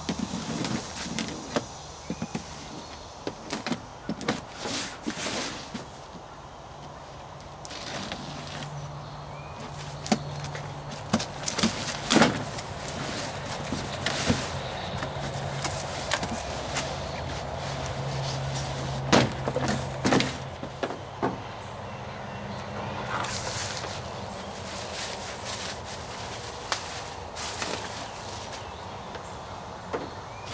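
A cardboard box being cut open and unpacked by hand: flaps and cardboard scraping and folding, with plastic packing crinkling and scattered sharp knocks and clicks. A steady high insect drone runs underneath.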